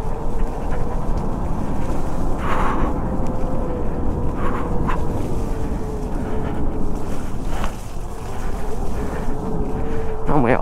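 Talaria X3 electric dirt bike's motor whining steadily while riding along a dirt trail, its pitch wavering slightly with the throttle, under a rumble of wind noise on the microphone. A few short noises break in, around two and a half seconds, near five seconds and near eight seconds.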